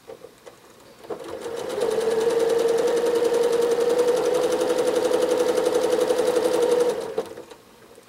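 Janome Horizon 7700 sewing machine stitching at speed during free-motion quilting. It starts about a second in, builds up within a second, runs steadily, then stops shortly before the end.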